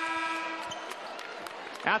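Arena's end-of-quarter horn sounding a steady tone that cuts off about a second in, marking the end of the first quarter. A few basketball bounces on the hardwood court follow over the hall's background noise.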